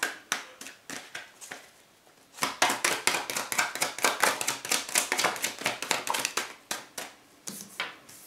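A tarot deck being shuffled by hand: a few scattered card clicks, then a dense run of rapid clicking lasting about four seconds before it stops near the end.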